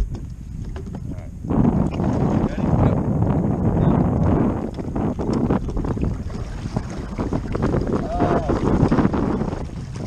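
Water rushing along the hull of a pedal-drive fishing kayak being pedalled hard from a start, with wind buffeting the microphone. The rush comes in suddenly about one and a half seconds in and stays loud and steady.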